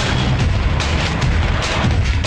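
Loud action film background score driven by rapid, heavy drum and percussion hits, about four strikes a second over a deep low rumble.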